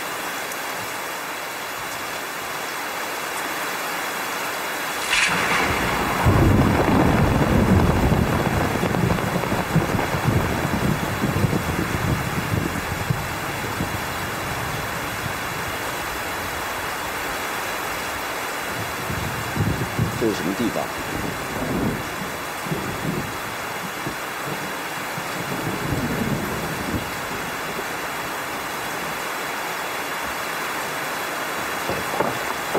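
Steady rain with a thunderclap about five seconds in, a sharp crack rolling into a long low rumble, followed later by fainter rolls of thunder.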